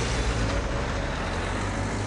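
Road traffic noise: a motor vehicle running close by, a steady low rumble under a hiss.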